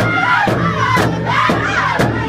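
Powwow drum group singing a crow hop song around a big drum: sticks strike the drum together about twice a second under loud, high-pitched group singing.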